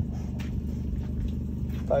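Vehicle engine idling with a steady low hum.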